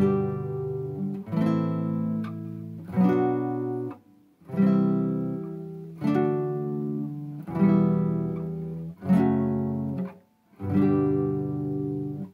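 Nylon-string classical guitar strummed with a pick, one chord about every one and a half seconds, each left to ring before the next. The chords run through the G major key sequence: G, A minor, B minor, C, D, E minor, F sharp minor.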